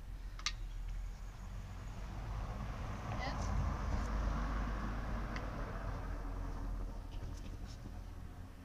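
A low, steady rumble with a haze of noise that swells and fades through the middle, and a few faint clicks, one early and a few near the end.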